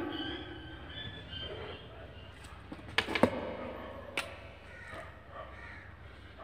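Felt-tip marker pens being handled and swapped. There are two sharp clicks about three seconds in and another just after four seconds, like a marker cap being snapped off and on.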